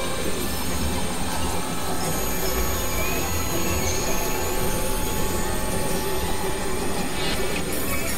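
Experimental electronic noise music from synthesizers: a dense, steady wall of hiss and a low rumbling drone, with a few thin high tones sliding in pitch above it.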